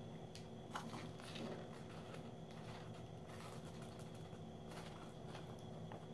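Quiet room with a few faint, short clicks and rustles from a small plastic measuring scoop and a plastic powder packet being handled.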